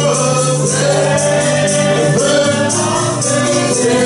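Gospel song led by a man singing into a microphone, with other voices singing along over instrumental backing with a steady bass and a regular shaken percussion beat.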